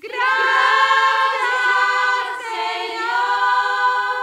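Choir singing a slow hymn in long held chords. A chord enters sharply at the start, moves to a new chord about halfway through, and begins to fade at the end.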